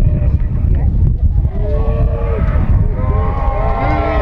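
Wind buffeting the microphone with a heavy rumble, and men's long, drawn-out shouts from players on the pitch starting about a second and a half in and building near the end.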